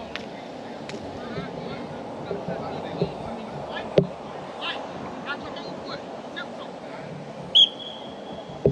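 Distant voices carrying across a football practice field, with a sharp knock about four seconds in. Near the end a coach's whistle gives one short, steady blast.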